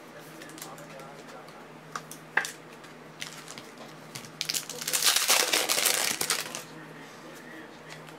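Foil wrapper of a 2008 Topps Finest football card pack crinkling as it is torn open, loudest for about two seconds around the middle, with a few light handling clicks before it.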